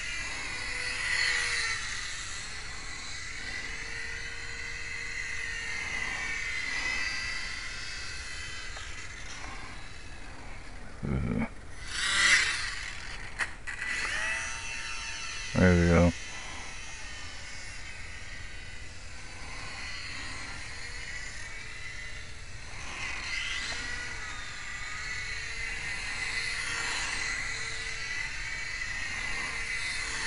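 Electric motor and propeller of a FlyZone PlayMate micro RC airplane whining as it flies, the pitch rising and falling in arcs as the plane circles past. Two brief louder sounds break in, about a third of the way and halfway through, the second falling in pitch.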